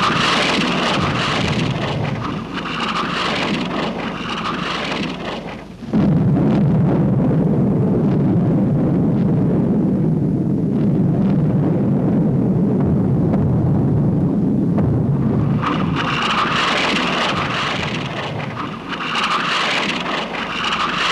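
Film soundtrack of an artillery bombardment: continuous rumbling shellfire. A sudden, louder and deeper rumble begins about six seconds in, and the sound grows harsher again near the end.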